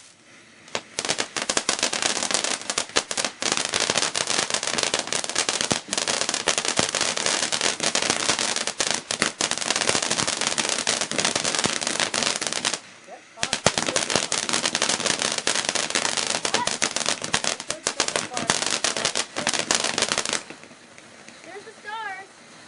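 Consumer ground fountain firework crackling in a dense, rapid, loud stream of tiny pops, with a half-second lull around the middle before it resumes; it stops about a second and a half before the end.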